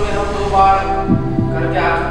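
Quiz-show suspense music: a sustained low drone under held tones, with a heartbeat-like double bass pulse about a second in.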